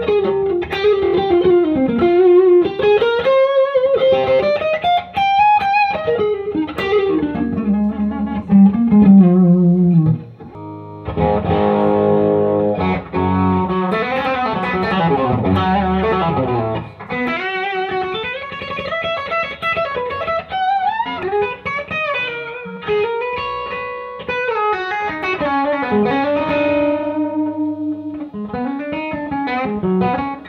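Cherry-red Gibson semi-hollow electric guitar played through an amp: single-note lead lines with string bends and vibrato, broken by a stretch of fuller chords from about eleven seconds in.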